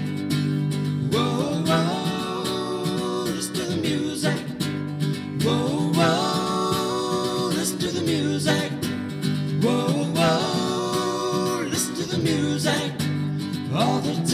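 Acoustic guitar strummed in a steady rhythm, with a man singing in phrases over it.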